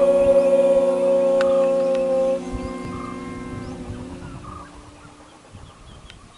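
Several voices holding one long chanted note together, a group mantra chant, that fades out steadily over about five seconds.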